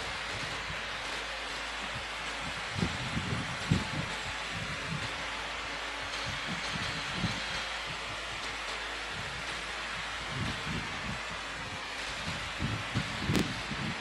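Steady hiss of a large church's room tone through the altar microphone, with scattered soft low bumps and rustles from handling at the altar, a few slightly louder knocks near the start.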